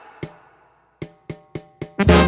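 Sharp wooden clicks of drumsticks struck together, one alone and then four evenly spaced, about three a second: a count-in for the banda.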